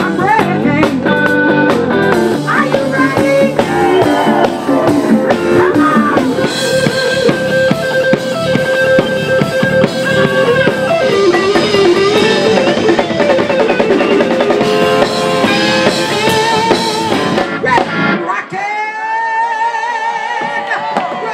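A live blues band plays: a female lead vocalist sings sustained notes over electric guitar and a drum kit. About eighteen seconds in, the drums and low end drop away, leaving a thinner wavering melodic line.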